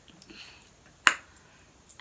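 A single sharp click about a second in, against a quiet room.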